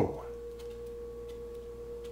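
A steady hum at one fixed pitch, with a few faint light taps of fingertips walking across a tablecloth-covered table.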